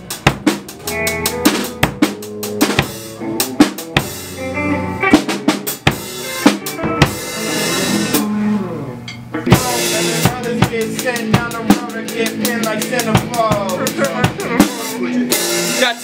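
A band playing a song live: drum kit with kick, snare and cymbals to the fore, struck densely throughout, over bass and other pitched instruments whose notes slide in the second half.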